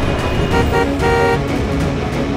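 Busy city road traffic with car horns honking, under background music.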